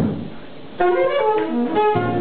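A dull thump, then about a second in a jazz saxophone starts a phrase, moving through several quick notes and holding others.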